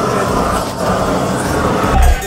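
Gas glassworking burner running with a steady roar while its flame heats a blown glass vase.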